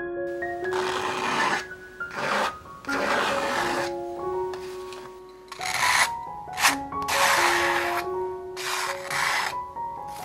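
Palette knife scraping and spreading thick acrylic paint across a stretched canvas in about six short strokes, with a pause in the middle. A sharp tick comes about two-thirds of the way in. Gentle piano music plays underneath.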